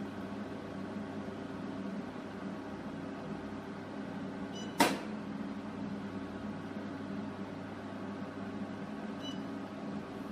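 SHR IPL hair-removal machine running with a steady hum. One sharp click comes about halfway through, and a faint short beep near the end.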